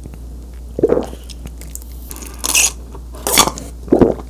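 Drinking from a juice box through a straw close to the microphone: gulping swallows about a second in and near the end, with two short hissing slurps between.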